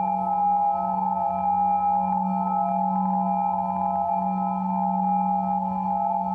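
Sustained ambient drone of several steady held tones, a low hum under a cluster of higher ringing tones, slowly swelling and dipping in level.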